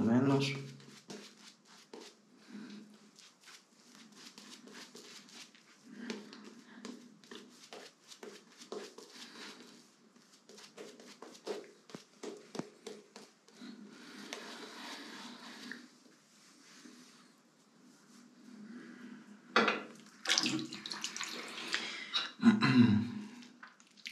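Shaving brush working soap lather over a stubbly face: many quick, soft wet strokes with a faint crackle of bubbles. Louder strokes come in the last few seconds.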